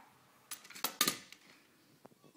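A youth baseball bat clattering against a batting tee and its ball: a few sharp knocks about half a second in, then two more close together around one second in.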